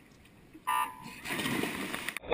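Electronic swim-start beep, a short tone and the loudest sound, about two-thirds of a second in. It is followed by the rushing splash of a backstroke swimmer springing off the wall from the starting grips.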